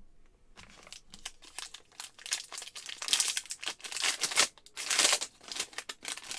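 Foil wrapper of a 2022 Score Football trading card pack crinkling as it is torn open by hand. The crackling is loudest from about three to five seconds in.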